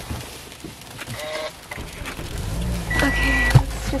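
Car engine being started: a low rumble builds about halfway through and settles into a steady idle. A single high beep sounds shortly before the end, followed by a click.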